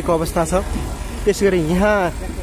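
A person talking over a steady low engine rumble.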